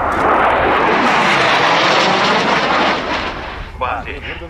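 Lockheed Martin F-117 Nighthawk's two non-afterburning General Electric F404 turbofans during a flypast: a loud jet rush that builds at once, holds, and fades about three seconds in.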